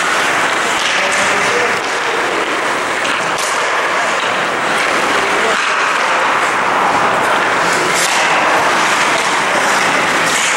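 Ice hockey skates scraping and carving on rink ice over a loud, steady hiss, with a few sharper scrapes.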